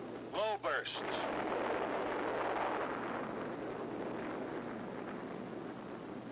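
Atomic bomb detonation on an old film soundtrack: a long, noisy blast that swells about a second in and slowly dies away, over steady soundtrack hiss.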